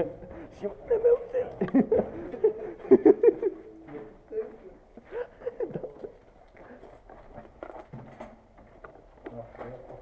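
Indistinct male voices talking, loudest in the first few seconds and fainter after, with light footsteps and scuffs on a gritty concrete floor.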